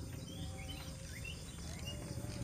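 Low steady background noise with a few faint, scattered bird chirps.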